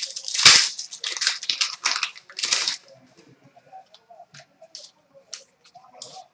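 Stiff Panini Prizm trading cards being slid and flicked against each other in the hands: a quick run of rustling swipes over the first three seconds, then only a few faint light clicks.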